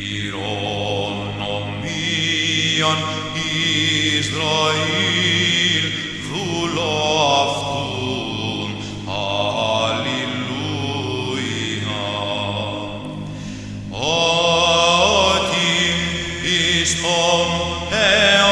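Greek Orthodox Byzantine chant: a solo vocal melody with gliding ornaments sung over a steadily held low drone (the ison). The drone shifts to a new note about 14 seconds in.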